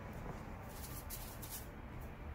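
Faint rustling and rubbing of hands handling modelling clay as a small ball of it is shaped, with a few soft brushing sounds about a second in.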